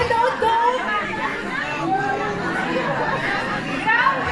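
Indistinct chatter of many people talking at once, with no single voice standing out.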